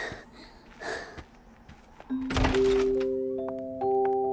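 A door thunk about two seconds in, followed by bell-like chime notes that enter one after another, climbing in pitch and ringing on together.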